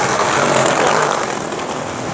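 A passing vehicle in city street traffic: a rushing noise that swells within the first second and then eases off.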